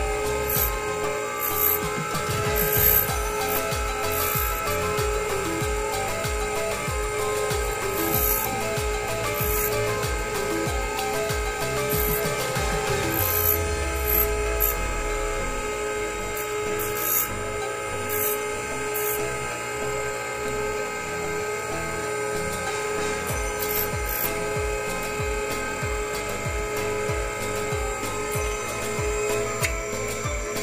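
Bench dental lathe running with a thin cutting disc trimming a small acrylic partial denture, a steady mechanical whine, with background music with a regular beat underneath.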